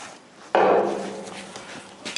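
A single loud metal clunk about half a second in, tailing off over a second or so, as a steel narrowboat tiller is dropped into its boss.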